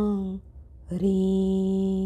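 A woman's voice chanting a Jain mantra in long held syllables at a steady pitch: one drawn-out syllable ends about half a second in, and the next begins about a second in and is held steady.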